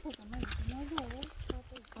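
People talking, with a few sharp scuffs of footsteps on dry, cracked dirt. A low rumble of wind on the microphone runs underneath.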